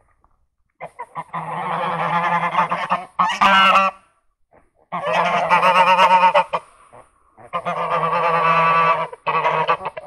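Domestic geese honking loudly in several long bouts of rapid calls, separated by short pauses.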